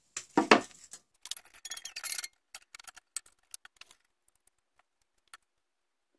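Light metallic clinks and clicks of scroll saw parts being handled during a blade change: a louder clatter about half a second in, another cluster of clinks about two seconds in, then scattered single clicks that thin out by about five seconds.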